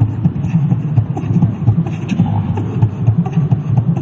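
Beatboxing into a handheld microphone: a fast, unbroken run of deep bass kicks with sharp clicks over them.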